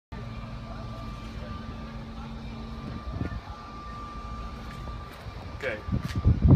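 Steady low mechanical hum with a thin high whine over it. A man says "Okay" near the end.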